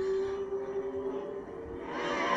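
Steady drone of IndyCar engines as cars circulate past at an even, slow pace, with the pitch holding constant and the sound easing off in the second half.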